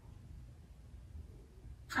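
Quiet room with a faint, steady low hum and no distinct sound; speech begins at the very end.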